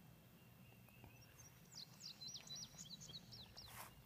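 A songbird faintly singing a rapid run of short, high, falling chirps through the middle of otherwise near-silent open-air background, followed by a brief rustle near the end.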